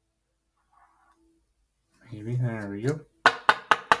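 A brief, unworded murmur from a man, then four quick, sharp knocks of a rigid plastic card top loader tapped against the table.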